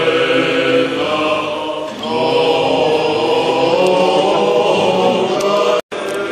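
Choir singing Orthodox liturgical chant in long, sustained notes, with a short break between phrases about two seconds in. The sound cuts out abruptly for a moment just before the end.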